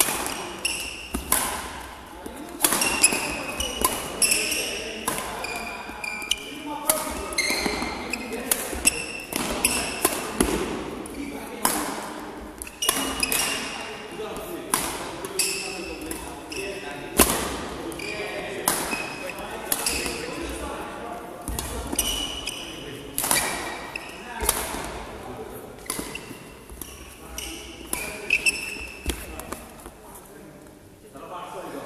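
Badminton rally: sharp racket strikes on the shuttlecock at an irregular pace, with court shoes squeaking briefly and feet landing on the hall floor, all echoing in a large sports hall.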